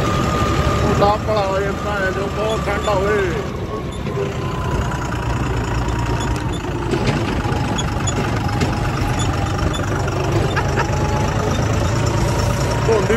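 John Deere 5310 tractor's diesel engine running steadily, heard from the driver's seat.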